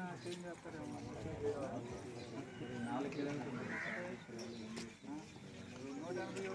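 Men talking in a group conversation, their words indistinct.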